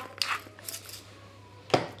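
Hand spice grinder being twisted over a mixing jug: a few faint grinding clicks near the start, then a single knock near the end.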